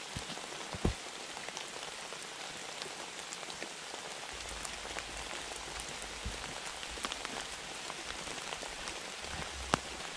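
Steady rain falling on leaves and the forest floor, an even hiss scattered with small drop ticks. A sharper knock about a second in and another near the end.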